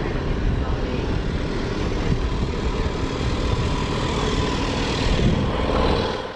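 Steady outdoor background noise: a low rumble with hiss, with faint voices in it.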